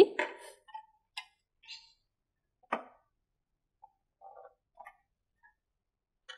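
A few light clicks and taps at a whiteboard tray as markers or an eraser are picked up and set down; the sharpest click comes a little under three seconds in, with fainter ones around it.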